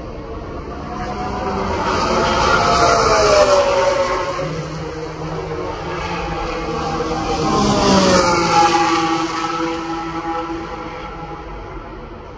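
Race car engines passing by twice, each at high revs. Each rises to a peak and drops in pitch as it goes past, the second following about four and a half seconds after the first.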